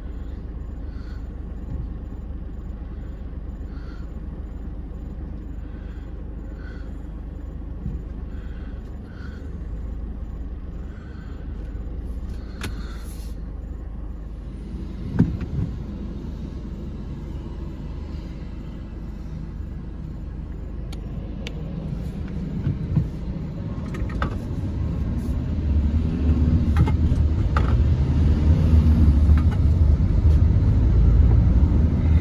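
Steady engine and road rumble heard from inside a moving car, with a faint regular tick about once a second in the first ten seconds; the rumble grows louder over the last third as the car speeds up.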